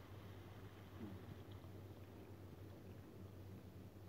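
Very faint sound of water being poured into a pan of chicken in tomato sauce, over a low steady hum.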